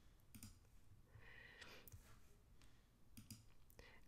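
Near silence with a few faint computer mouse clicks: one about half a second in and a quick pair near the end.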